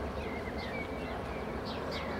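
Small birds giving many short high chirps in quick succession over a steady low rumble.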